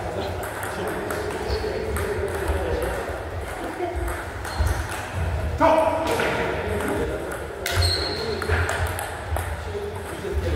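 Table tennis ball being hit back and forth in a rally: sharp clicks off the bats and the table, each with a short ringing ping, the loudest a little past halfway.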